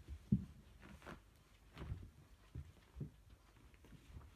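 Two cats wrestling on a rug: a handful of soft thumps and scuffles as their bodies and paws hit the floor, the loudest about a third of a second in.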